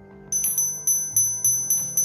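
The small metal Liberty Bell on a Philadelphia Marathon finisher medal being rung, starting about a quarter second in. It strikes about four times a second, each strike a high, bright 'ding' that keeps ringing into the next.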